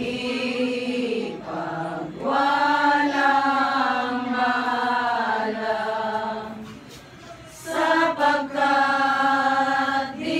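A choir singing slowly in long, held notes, with a short break between phrases about seven seconds in.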